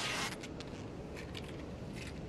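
Adhesive tape being pulled off the roll and wound around a forearm: a short ripping rasp at the start, then a few faint crackles just over a second in, over a low steady rumble.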